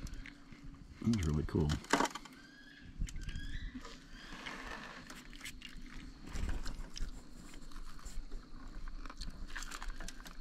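People chewing and crunching on battered fried carp close to the microphone, with scattered small clicks and taps of plates and tableware.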